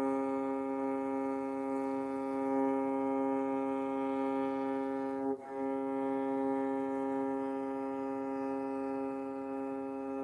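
Morin khuur (Mongolian horse-head fiddle) with its lower string bowed in a long, steady note on one pitch while it is being tuned. There is a short break about halfway through as the bow changes direction.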